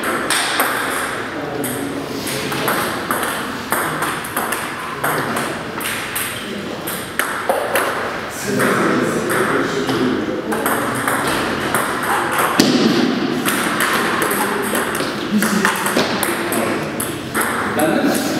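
Table tennis balls clicking off bats and tables in many quick, irregular taps, with people talking in the hall.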